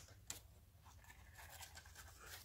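Near silence: faint handling of linen thread being wrapped around a cardstock card, with a light tick about a third of a second in.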